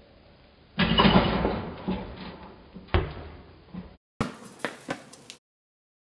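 Portable basketball hoop slammed by a dunk: a loud clang of rim and backboard about a second in, rattling as it dies away over a couple of seconds, then a sharp knock. After a brief cut, a few more sharp knocks.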